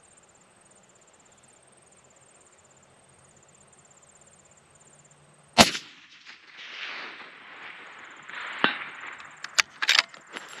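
Faint steady insect chirping, then a single loud rifle shot about halfway through whose report rolls away over the next few seconds, followed by a few sharp clicks near the end.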